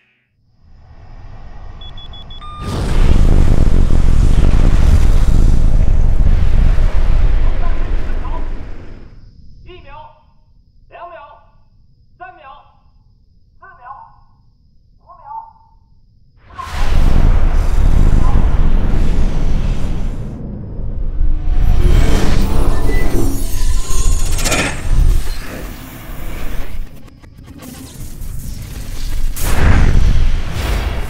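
Rocket engine of a launching ballistic missile, filmed as movie sound: the roar builds over the first few seconds and stays loud until about 9 s. A second long loud stretch comes from about 17 s on. Between the two, a voice gives six short calls about a second apart.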